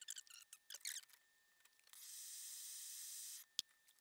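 Faint small squeaks and scratches, then a steady high hiss lasting about a second and a half, and one sharp click near the end, as a flux brush is worked over a copper pipe.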